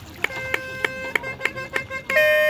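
A steady pitched tone held for nearly two seconds, starting about a quarter second in, with sharp clicks about three times a second over it.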